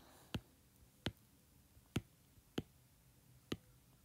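Stylus tip tapping down on an iPad's glass screen: five faint, sharp clicks at uneven intervals as sculpting brush strokes are laid on.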